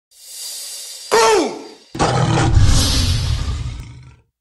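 Intro sound effects for an animated logo. A hiss swells up, then a short, loud cry falls in pitch about a second in. From about two seconds a long, loud, noisy rumble carries a hiss on top and fades away near the end.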